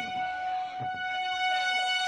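A single high note from an amplified instrument, held steady without wavering and rich in evenly spaced overtones, with a few faint low knocks beneath it.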